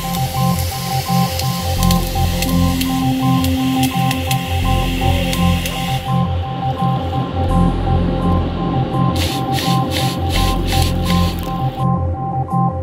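Background music with a steady beat, over the hiss of water spraying from a fire hose nozzle. The hiss is steady for the first half, then comes in several short spurts near the end.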